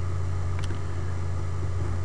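Steady low hum with an even hiss over it, with one faint click a little after half a second.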